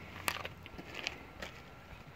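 Quiet background with three faint, sharp clicks, about a third of a second, one second and one and a half seconds in.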